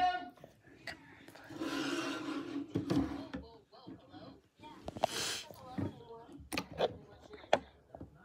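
Handling noise from the phone camera being moved and set down: a scatter of sharp taps and knocks with rubbing and rustling between them, along with quiet wordless vocal sounds.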